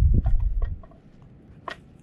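A spoon scraping and clinking against a Trangia cooking pot as risotto is tipped out into a bowl. There is a run of small clinks in the first second and one sharper clink near the end, over a low rumble at the start.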